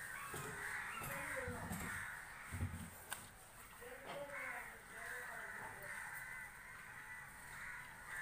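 Crows cawing on and off, with a couple of soft low thumps in the first three seconds.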